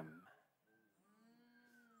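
Near silence, with the end of a man's spoken word fading out at the start and a faint pitched sound in the second half.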